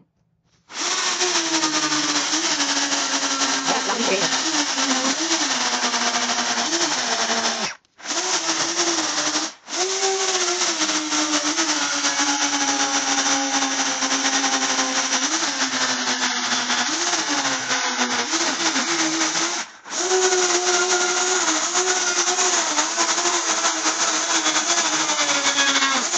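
Makita chainsaw running at speed as it carves into a fig trunk, its pitch wavering and sagging as the chain bites into the wood. It starts just after the beginning and cuts out briefly three times along the way.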